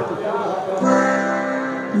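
Accordion playing a short introduction, settling on a held chord about a second in, with a man's singing voice coming in at the very end.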